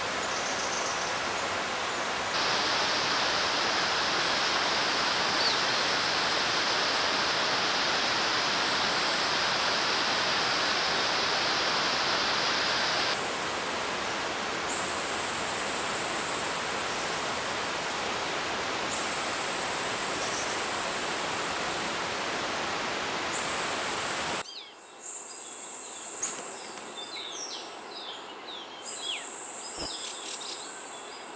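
Loud, steady rush of a rocky mountain stream, with a high insect buzz coming and going in its second half. About 25 s in, the water noise stops, leaving quieter woodland sound with short bird chirps and the insect buzz.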